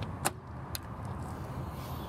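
The paddle latch of a motorhome's exterior storage-compartment door clicking twice, about half a second apart, as it is released and the door is swung open, over a low steady background rumble.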